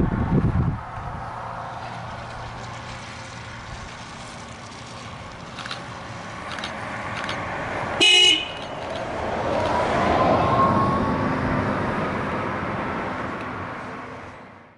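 Ebusco battery-electric city bus approaching and driving past, with a short horn toot about eight seconds in. The toot is the loudest sound. As the bus passes, its electric drive gives a rising whine over swelling tyre and road noise, which then fades.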